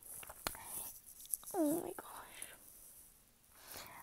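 A person's quiet, breathy vocal sounds: a few mouth clicks and breaths, with a short murmured sound that dips and rises in pitch about halfway through.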